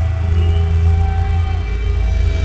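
Loud, steady low droning rumble over the concert PA, with a few faint thin tones above it, just before the band comes in.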